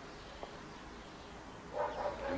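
Faint steady background, then near the end a dog starts to bark with short rising yelps.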